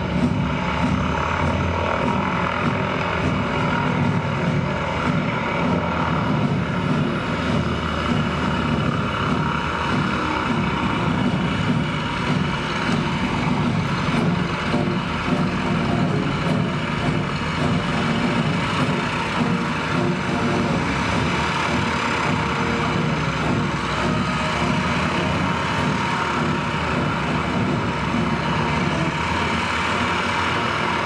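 Propeller airplane engine droning steadily and loudly without a break: the stunt show's prop plane running with its propellers spinning.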